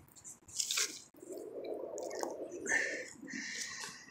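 Serrated hand digging tool scraping and cutting into soil and tree roots in a hole, with irregular crunching of dirt and one sharp click about a second in.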